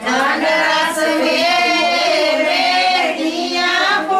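Women singing a Punjabi wedding folk song together in high voices, with long, wavering held notes and no drum.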